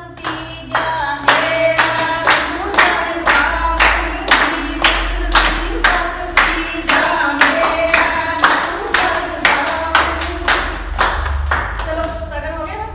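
Women singing a Punjabi giddha folk song together, with steady group hand-clapping keeping the beat at about two claps a second from about a second in.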